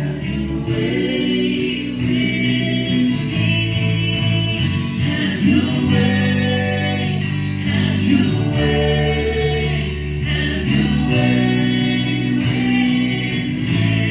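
Live worship band playing a gospel song: voices singing together over strummed acoustic and electric guitar, steady and unbroken.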